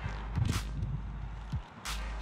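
A person chewing a mouthful of hamburger, with a few faint mouth clicks, over a steady low rumble.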